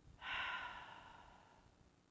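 A woman's long, audible breath out, a sigh that starts about a quarter second in and fades away over about a second and a half.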